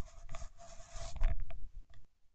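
Scratchy rustling and scraping close to the microphone, with a few sharp clicks, lasting about a second and a half and dying away near the end.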